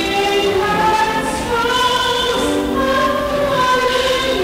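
Church choir singing a slow hymn, the voices holding each note for about a second.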